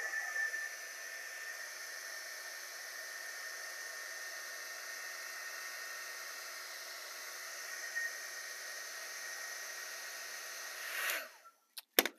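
Handheld heat gun running steadily, a fan whir with a faint high whine, blowing hot air to texture and melt the surface of extruded foam; it is switched off about eleven seconds in.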